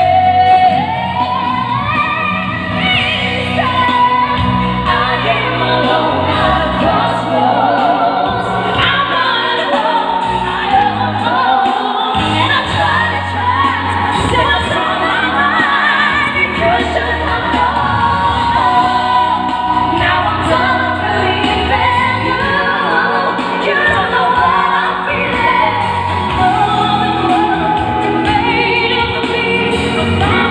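Female vocal group singing a pop ballad live over loud amplified backing music, in several voices, without a break.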